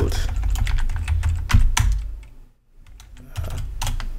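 Typing on a computer keyboard: a quick run of keystrokes, a short pause about two and a half seconds in, then more keys.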